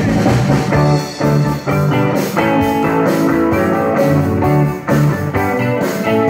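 Live rock and roll band playing the instrumental opening of a song just after the count-in: electric guitars and drum kit with a steady beat.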